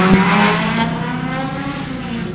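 Sports-car engine revving up hard, its pitch climbing quickly over the first second, then settling into a steady drone. Heard from inside a car's cabin.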